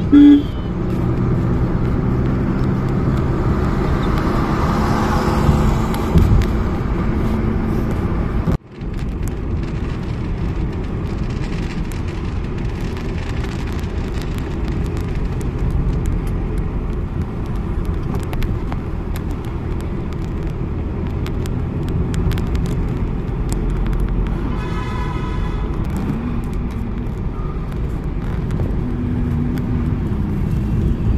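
Steady low rumble of a car's engine and tyres on the road, heard from inside the moving car's cabin. A short pitched sound comes through about five seconds before the end.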